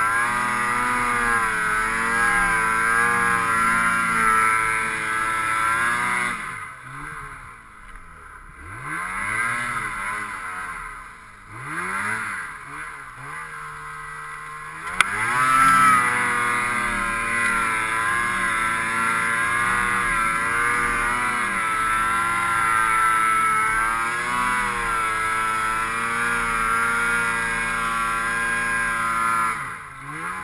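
Ski-Doo 600 HO two-stroke snowmobile engine held at high revs while plowing through deep powder, its pitch wavering with the load. About six seconds in the throttle comes off and the revs fall and climb several times, quieter. A sharp click comes about halfway, then it goes back to full throttle until the revs drop off at the very end.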